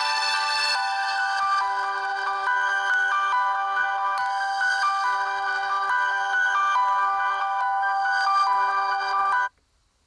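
Electronic tune of clean, repeating synthesized notes, like a phone ringtone, that cuts off suddenly about nine and a half seconds in.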